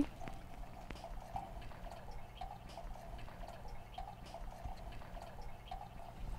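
Faint trickling water from a hydroponic system, over a steady low hum, with two faint clicks in the first second.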